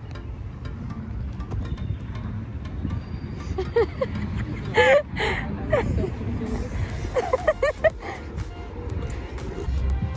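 Outdoor street ambience: a steady low rumble of passing traffic and wind on a handheld phone microphone, with faint voices or singing in the distance about halfway through and again near the end.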